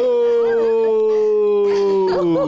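A long, held scream that slowly falls in pitch, with a lower male yell joining at the start and held underneath it.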